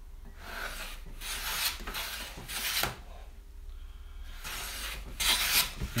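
Low-angle jack plane being pushed over a softwood board in a few strokes, its blade set fine with the mouth closed, shaving off very thin curls. The strokes make a dry rasping hiss, the last one the loudest.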